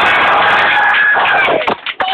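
A crowd cheering and clapping in a room, a loud burst that dies away after about a second and a half.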